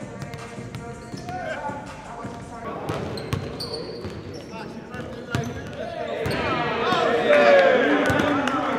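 Basketballs bouncing on a hardwood gym court with voices in the background. About six seconds in, many voices rise together into loud group chatter.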